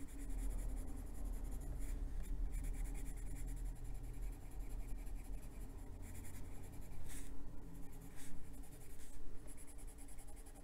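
Coloured pencil rubbing and scratching steadily across paper as leaves are shaded in, with a few louder strokes in the last few seconds.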